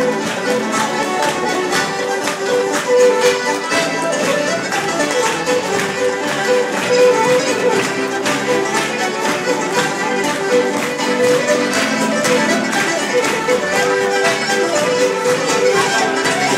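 Irish traditional dance tune played on button accordion, fiddle and banjo, with the steady clatter of sean-nós dance steps on a wooden door laid on the stage.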